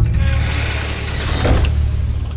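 Cinematic logo-sting sound design: a deep steady drone under a mechanical whoosh that swells about a second and a half in.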